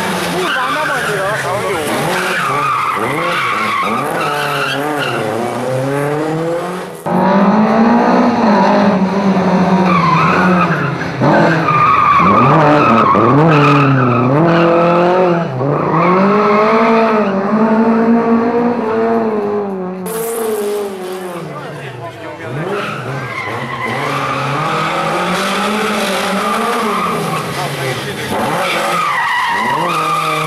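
Lada 2101 rally car's engine revving hard, pitch repeatedly climbing and dropping back through gear changes and corners, with tyres squealing as the car slides through the turns.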